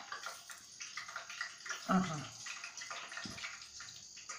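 Hands working a soft, oiled yeast-dough ball: faint sticky rubbing and squishing, with a soft thump a little after three seconds as a ball is set down on the table. A woman says a short "aha" about two seconds in.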